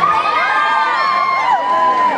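A crowd of children shouting and cheering at once, many high voices overlapping, with one long held call.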